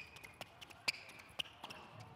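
Light footsteps of athletic shoes tapping on an indoor tennis court as a person steps through an agility ladder: several short, sharp taps roughly every half second.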